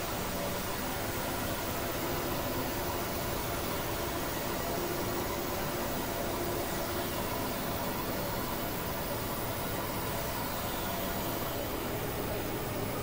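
Experimental noise music: a dense, steady wash of hiss spread across all pitches, with faint held drone tones under it, made of several tracks playing at once.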